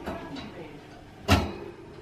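A single sharp knock about a second in, with faint talk around it.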